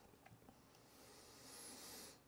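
Near silence: room tone, with a faint hiss in the second half.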